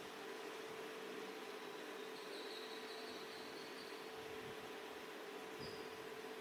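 Faint background noise: a steady low hum with a light hiss, and a faint high whine for about a second in the middle.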